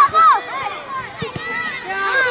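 Several high-pitched voices shouting and calling over one another, loudest at the start, with a few short knocks among them.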